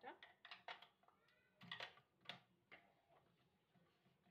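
Faint clicks and knocks, six or so spread over the first three seconds, with a short rising whine-like tone a little after a second in.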